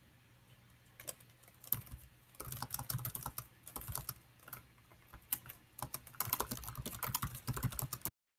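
Typing on a computer keyboard: quick key clicks, scattered for the first couple of seconds and then a dense run, over a faint steady low hum.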